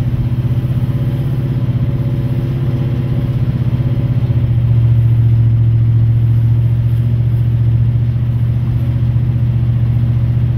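Oldsmobile 455 big-block V8 with long-tube headers and a 3-inch full exhaust, running steadily at low road speed, heard from inside the car. It grows a little louder about halfway through.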